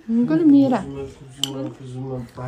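Voices with a rising-and-falling exclamation, and a single sharp clink of tableware about one and a half seconds in.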